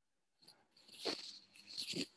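Faint breathing and mouth noises from a person at a video-call microphone, with a short breath about a second in and another just before speech resumes.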